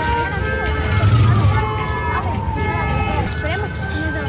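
A siren wailing, its pitch sliding slowly down over a couple of seconds and starting to climb again near the end, over crowd chatter and a low rumble that swells about a second in.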